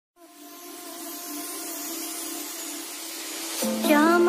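Music fading in: a few held tones over a faint hiss, growing gradually louder, then near the end a steady low drone enters with a wavering melody line.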